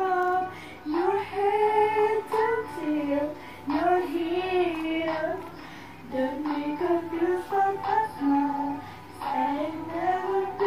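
A young woman singing a melody solo, unaccompanied, in phrases with short pauses between them.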